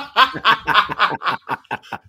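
Two men laughing hard together, a quick run of short bursts of laughter.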